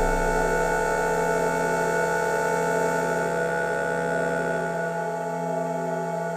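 Eurorack modular synthesizer holding a sustained chord of several steady tones without any beat, slowly fading, with the deepest note dropping away near the end.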